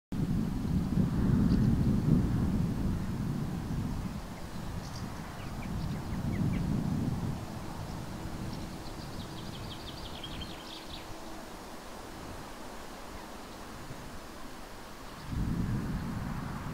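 Wind buffeting the microphone outdoors in gusts, strongest in the first few seconds, again around six seconds in and just before the end. A small bird trills briefly in the middle, over a faint steady drone.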